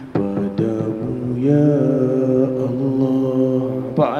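A man singing long, held, slowly wavering notes into a wireless karaoke microphone, amplified through an SDRD SD-305 Bluetooth karaoke speaker.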